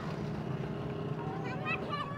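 A vehicle engine running steadily, with a child's high voice calling out in the second half.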